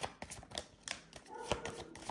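Tarot deck being handled over a tabletop spread: a run of irregular, light clicks and taps of cards against each other and the table as cards are worked off the deck.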